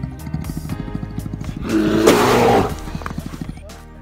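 Background music with a steady beat, and about two seconds in a loud, rough call lasting about a second from a black bear trapped at the bottom of a well.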